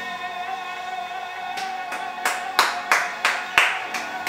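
A woman singer's long held note from a live recording of the song, playing back over a laptop. About a second and a half in, sharp hand claps join, about three a second, louder than the singing.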